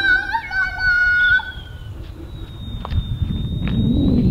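A child's long, high-pitched held shout that fades out about two seconds in, followed by a low rumble of wind and handling noise on the microphone as the camera swings around.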